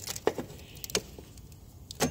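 A few light clicks and knocks, mostly in the first second, as gloved hands work the power steering pump's drive belt off its pulleys among the engine parts.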